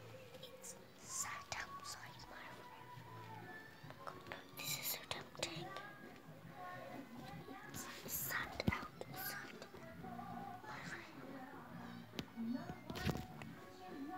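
A girl whispering close to the microphone, in broken phrases with loud hissing sibilants, and a few sharp clicks and knocks as the phone is handled.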